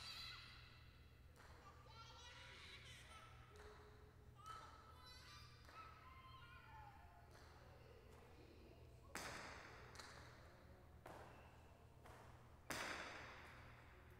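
Jai alai ball (pelota) striking the court wall with two sharp, loud cracks, each with a short echo: one about nine seconds in and another near the end. Faint murmured voices underneath.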